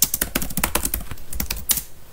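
Typing on a computer keyboard: a quick, irregular run of key clicks as a word is typed.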